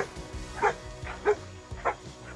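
Shar-Pei dogs barking at play: three short, sharp barks roughly half a second apart, over background music.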